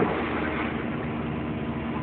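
A steady background hum under an even wash of noise, with no changes or sudden sounds.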